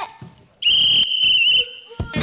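A referee's whistle blown once, a steady high tone lasting about a second and wavering slightly just before it stops, signalling the start of a race.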